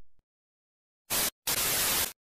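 Static noise sound effect: two bursts of even hiss about a second in, a short one and then a longer one, each starting and stopping abruptly, used as a digital glitch effect.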